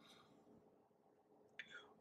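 Near silence: quiet room tone in a pause between spoken sentences, with one brief faint sound near the end.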